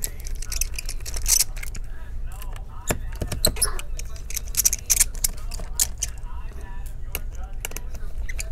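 Small precision screwdriver backing screws out of a laptop battery's mounting points: irregular light clicks, ticks and scrapes of the metal tip and tiny screws against the metal and plastic chassis.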